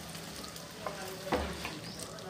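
Mutton curry sizzling in a cooking pot, with a few light knocks, the loudest about a second and a half in.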